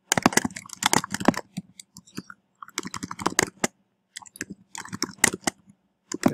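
Typing on a computer keyboard: quick runs of keystrokes in three spells, with short pauses between them.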